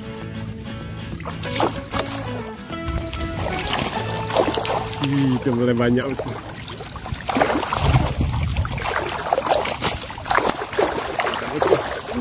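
Water splashing and sloshing in irregular bursts as a chicken-wire mesh fish trap packed with tilapia is lifted out of shallow water, the fish thrashing inside. Background music plays over the first few seconds.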